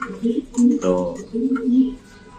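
Domestic pigeons cooing: a couple of low, drawn-out coos.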